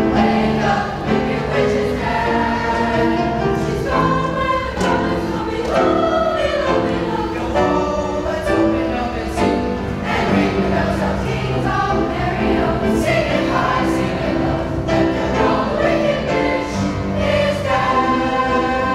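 Middle-school concert choir of girls' and boys' voices singing together.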